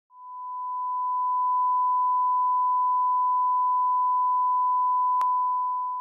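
Line-up test tone accompanying colour bars: one steady, pure, high beep that swells in over the first second or so and fades out near the end. A short click comes about five seconds in.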